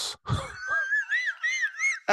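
A man laughing: a short laugh, then a high, squeaky wheezing laugh that rises and falls in quick pulses, about four a second.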